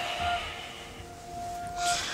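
Soft background music: held synth notes that fade in and out about once a second over a faint hiss.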